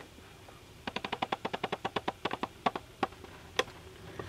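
Camera mount being adjusted: a fast run of ratcheting clicks, about ten a second for a second and a half, then three single clicks.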